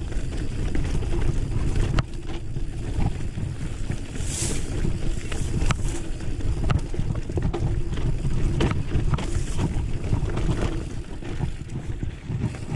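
Mountain bike riding over rocky dirt singletrack: a steady wind rumble on the microphone, with frequent clicks and rattles from the bike and tyres over stones, and a brief hiss about four and a half seconds in.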